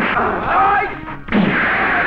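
Movie fist-fight sound effects: men shouting as they swing, then a loud, booming punch impact about a second and a half in, with a deep thud and a lingering tail.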